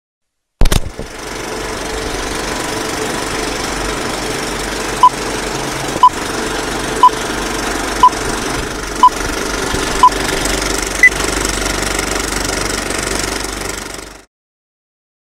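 Old film projector sound effect under a countdown leader. A thump as it starts, then a steady mechanical rattle with film crackle, with a countdown beep once a second: six beeps at one pitch, then a seventh, higher one. It cuts off suddenly near the end.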